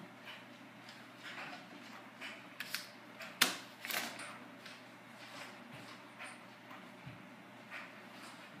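A few light knocks and clicks, the sharpest about three and a half seconds in, over a faint steady hum.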